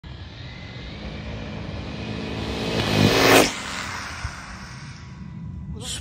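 Arrma Talion XL RC car making a high-speed pass: the brushless motor's whine and tyre noise build to a peak about three seconds in, then fade with a drop in pitch as it goes by.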